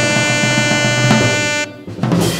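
Live jazz quartet: two tenor saxophones holding a long note over upright bass and drums. The band breaks off together suddenly near the end, ending the tune.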